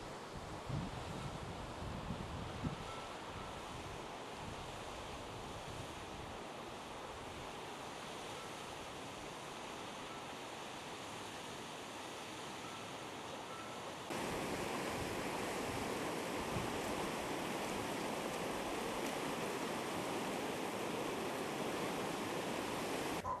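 Rushing water of an alpine mountain stream, a steady hiss that jumps suddenly louder about two-thirds of the way through. A few low bumps of wind on the microphone in the first few seconds.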